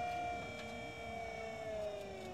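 Battery-powered electric motor of a hydraulic screw-flight forming machine running its pump with a steady whine, the pitch sagging slowly in the second half.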